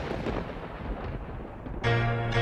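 A rumble of thunder fading away. Near the end, music comes in sharply with a deep bass note and chords.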